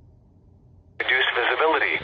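Radioddity GD-77 handheld radio's speaker opening abruptly about a second in: the scan has stopped on the NOAA weather station at 162.400 MHz. A weather-broadcast voice comes through thin and narrow, as from a small radio speaker.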